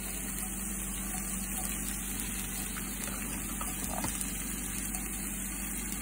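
Crumbled tofu frying in oil in a cast iron skillet: a steady sizzle over a low, even hum, with a few faint clicks.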